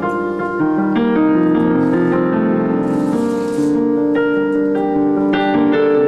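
Robertson RP5000 digital piano played with both hands in its acoustic piano voice: sustained chords under a flowing run of notes.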